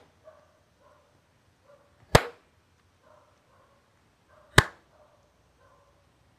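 Two sharp single hand claps about two and a half seconds apart, keeping a slow, even beat of the kind used to mark a Carnatic tala.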